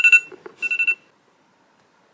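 Smartphone alarm beeping: two short electronic beeps about half a second apart within the first second.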